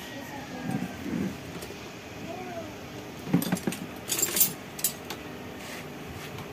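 Small metal hand tools clinking and jangling, with a flurry of sharp clinks about three and a half to five seconds in. The clinks come as the tappet (valve) clearances of a push-rod motorcycle engine are being set with a feeler gauge.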